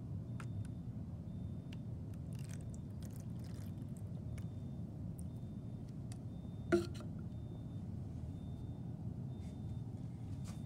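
Milk being poured from a plastic bottle into a shallow plastic dish, faint liquid sounds over a steady low room hum, then a single knock a little before seven seconds as the bottle is set down.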